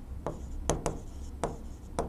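Marker pen writing on a board: about five short, separate strokes and squeaks.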